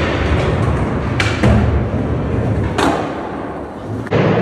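Skateboard wheels rolling on a smooth concrete floor with a steady rumble, broken by two sharp clacks of the board, about a second in and again near three seconds.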